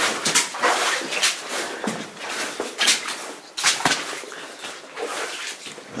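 Footsteps crunching and scuffing on loose rock and gravel, uneven and irregular, with sharp gritty crunches every half second to a second.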